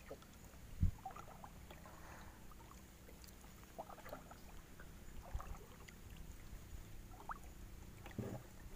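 Faint ambience aboard a small boat lying on the water: a low steady hum, light water sounds, and scattered small chirps, with a single knock on the boat about a second in.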